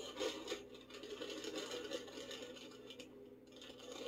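Faint rasping scrape of cheese being grated over a baking dish of pasta, heard through a laptop's speakers, over a steady low hum.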